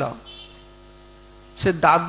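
Steady electrical mains hum from a microphone and amplification chain, heard in a pause between a man's spoken sentences; his voice trails off at the start and comes back near the end.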